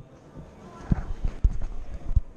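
A few dull knocks and thuds on a tabletop, one about a second in and another half a second later, with handling bumps as the camera recording on the table is picked up.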